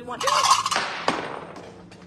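Green glass salt shaker dropped on a wood floor: a loud clatter, then a sharp knock about a second in that rings and fades. The glass does not break.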